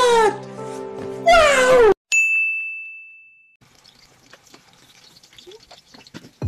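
A comedic meme sound effect: a loud voice-like sound with long sliding pitch that stops about two seconds in, followed at once by a single bright ding that rings and fades over about a second and a half. A faint low background remains after it.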